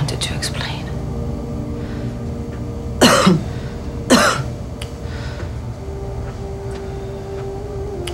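Two harsh coughs about a second apart, over a steady low hum.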